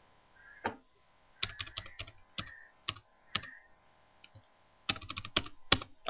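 Computer keyboard keystrokes while editing text: a few separate key presses, then a quick run of presses near the end.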